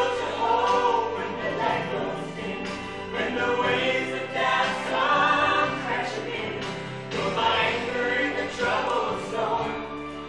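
A woman singing a gospel song into a microphone over instrumental accompaniment, with long held and bending notes.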